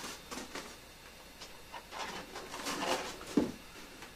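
White foam incubator lid being lowered and fitted onto the base, with light scraping and rustling as it is handled, then one sharp knock a little past three seconds in as it seats.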